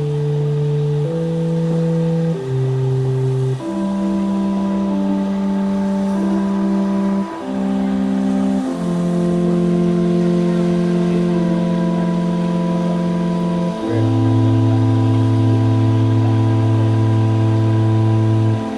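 Slow organ music: sustained chords, each held for one to five seconds before changing to the next.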